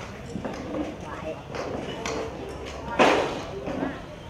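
People talking in the background while they work by hand at pots and bowls, with light clacks and knocks, and one loud, sharp knock or clatter about three seconds in.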